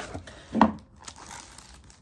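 Clear plastic bag wrapping crinkling as it is handled and pulled from a cardboard box, with one louder crinkle about half a second in.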